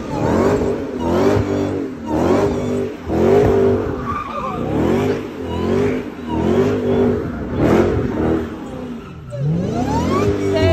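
Car engine revving up and down about once a second while the tyres spin and squeal in a smoky burnout or donut. Near the end the revs drop, then climb again.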